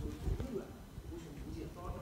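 Faint, indistinct voices of people talking in the background, with no clear words.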